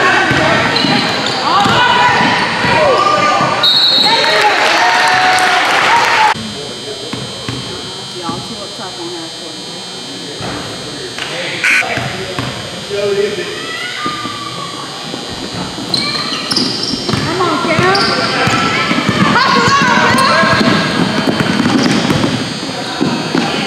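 Indoor basketball game: a ball bouncing on a hardwood court, sneakers squeaking and spectators shouting, ringing in a large gym. About six seconds in it drops to a quieter lull with a few isolated knocks, then the shouting and squeaking pick up again for the last few seconds.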